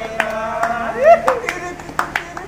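Men clapping their hands in time to singing. A voice holds a long note, then swoops up and down loudly about a second in.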